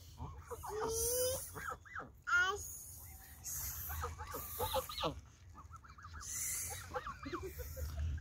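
Canada geese giving short, scattered clucking calls as they crowd in to be hand-fed bread.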